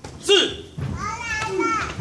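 Voices: a man calls out a count, then children shout and call out over one another.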